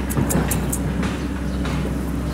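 Steady low hum of an engine running, with a few short high-pitched clicks in the first second.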